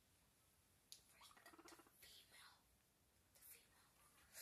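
Near silence: a soft click about a second in, then a few faint, brief soft sounds.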